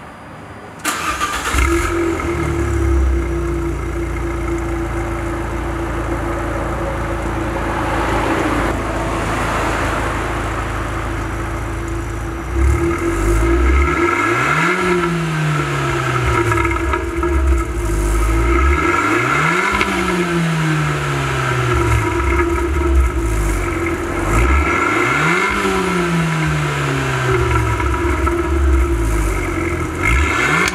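Abarth 500's turbocharged 1.4-litre four-cylinder through a UNICORSE aftermarket rear muffler. It starts up about a second in and idles steadily, then from about halfway it is blipped every five to six seconds, each rev rising quickly and falling back to idle.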